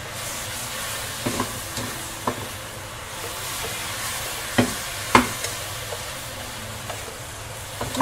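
Chicken pieces in honey and soy sauce sizzling in a non-stick frying pan while being stirred, with a steady hiss. A utensil knocks sharply against the pan several times; the loudest knocks come about four and five seconds in.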